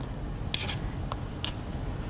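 Chef's knife cutting refrigerated biscuit dough on a plastic cutting board: a few light taps and scrapes of the blade on the board over a steady low hum.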